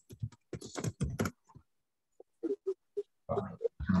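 Typing on a computer keyboard: quick runs of keystrokes in the first second and a half, a short pause, then more taps near the end, with a few brief low hums between them.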